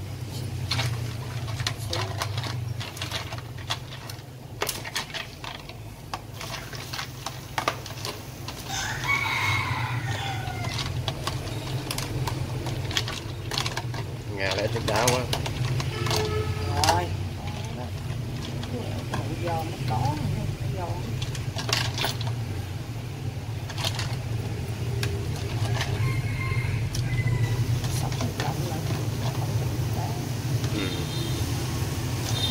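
Hands stirring blanched mustard greens in a plastic bowl of ice water, with repeated clicks and knocks of ice cubes against the bowl over a steady low hum. A rooster crows in the background from about nine seconds in.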